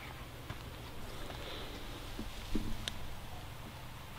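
A handheld EMF meter set down on twigs and leaf litter: a soft thump about two and a half seconds in and a single sharp click just after, over a low steady background hum.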